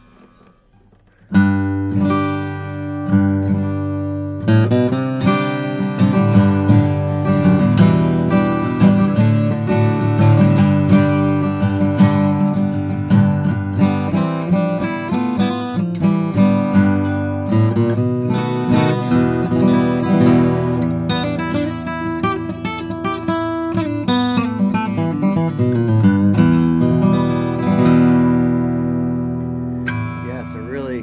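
Bourgeois OM cutaway acoustic guitar, with a torrefied Adirondack spruce top and Indian rosewood back and sides, played solo: picked chords and melody begin with a sharp attack about a second and a half in and carry on without a break. The last chord is left to ring and fades near the end.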